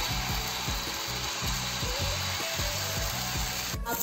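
Chila batter sizzling on a hot oiled pan, steady throughout, while a wooden spoon rubs over the pan spreading the batter.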